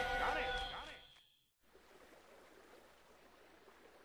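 Cartoon soundtrack: a wavering voice over a held musical chord fades out within the first second. After a moment of dead silence, only faint steady hiss remains.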